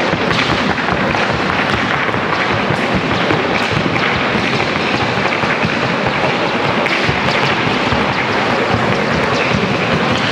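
Hooves of a Colombian criollo filly in the trocha gait striking a wooden sound board in a fast, even, unbroken run, loud and steady.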